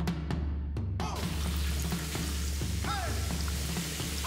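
Background music with a steady low beat. About a second in, a hissing sizzle starts suddenly as a panko-breaded pork cutlet (tonkatsu) deep-fries in hot oil.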